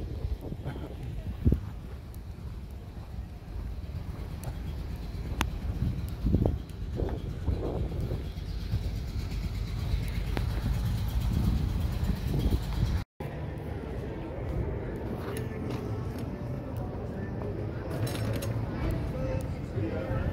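Busy town street ambience: a steady low rumble of slow, congested car traffic, with scattered voices of passers-by. The sound drops out for an instant about two thirds of the way through.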